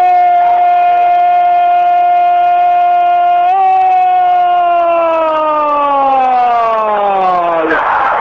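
A football radio commentator's long drawn-out "¡Gol!" cry: a man's voice holds one loud note for about three and a half seconds, lifts slightly, then slides slowly down in pitch before breaking off near the end.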